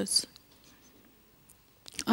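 A woman's speech into a handheld microphone trails off in a breathy hiss. About a second and a half of quiet room tone follows, with one faint tick, and her voice comes back in right at the end.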